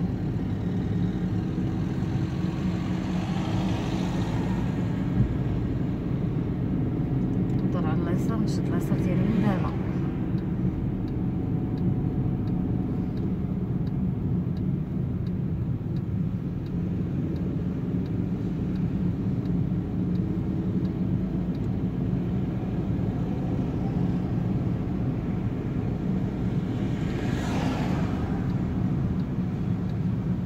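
Steady engine and road noise heard inside a small car's cabin as it drives along.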